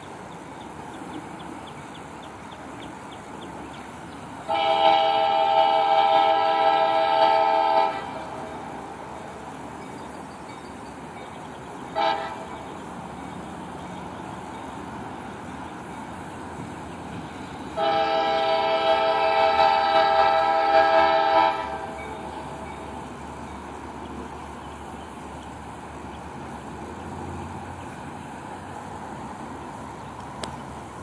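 Second-generation Nathan K5LA five-chime air horn on an approaching CSX GP38-2 diesel locomotive, sounding one long blast, a short blast, then another long blast, with the low running of the train underneath.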